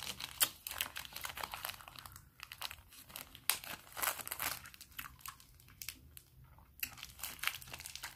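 Plastic ice cream bar wrapper crinkling and crackling as fingers handle it, in dense close-up bursts with a quieter stretch about five to seven seconds in.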